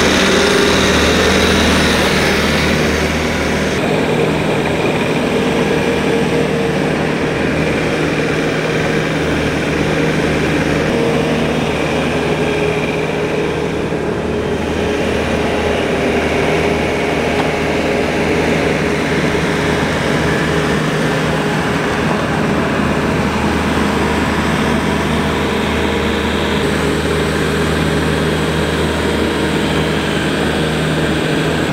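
Bobcat skid-steer loader's diesel engine running steadily as the machine manoeuvres, a low, even drone that is loudest in the first few seconds.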